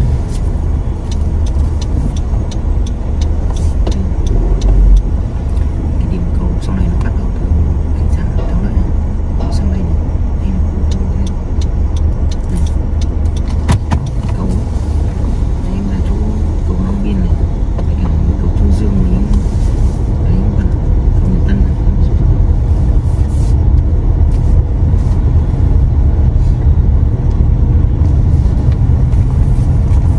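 Car driving slowly, heard from inside the cabin: a steady low engine and road rumble that grows a little louder in the second half. Faint voices come and go at times.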